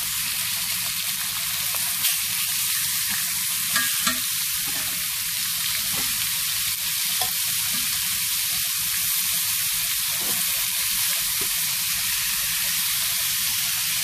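Thin marinated pork cutlets sizzling steadily in hot olive oil in a ridged grill pan. A few light clicks, about two and four seconds in, come as the cutlets are turned with metal tongs and a fork.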